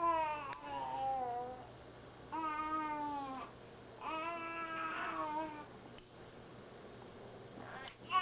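A baby vocalizing in three long, drawn-out calls about a second apart, the first falling in pitch; a fourth call starts at the very end.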